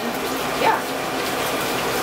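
Food frying in a pan on the stove: a steady sizzle throughout.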